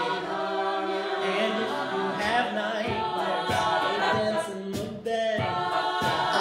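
Mixed-voice a cappella group singing a pop arrangement in close harmony, with sharp percussive vocal-percussion hits from about two seconds in. The sound dips briefly just before the five-second mark, then the full group comes back in.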